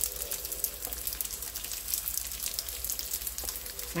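Fish-filled dumplings pan-frying in a shallow layer of oil in a nonstick pan: a steady sizzle with fine, fast crackles, browning the dumplings' bottoms.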